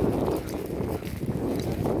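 Strong gusty wind buffeting the microphone, a low rumbling that swells and dips.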